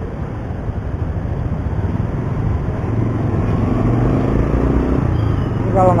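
Ride noise from a moving Yamaha Byson motorcycle in traffic: a steady low rumble of engine, wind and road noise, getting a little louder from about halfway through.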